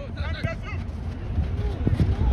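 Players' voices calling out across an outdoor soccer pitch in the first second, over a steady low rumble of wind on the phone's microphone.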